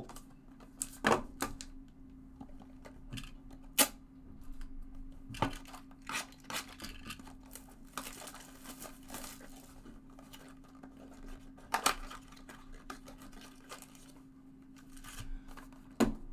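Cellophane shrink-wrap crinkling and tearing as a Topps Gold Label baseball card hobby box is unwrapped and opened, with scattered sharp clicks and taps from handling the box and setting down its packs. A faint steady hum runs underneath.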